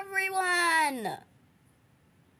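A child's voice holding the last sung word, "forever", as one long high note that slides down in pitch and trails off about a second in. After that, near silence.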